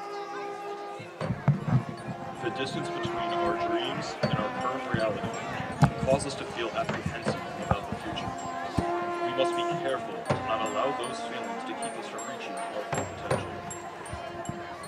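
Marching band playing: the horns hold a chord, then about a second in the drums come in with hard hits under the brass and carry on through a moving passage.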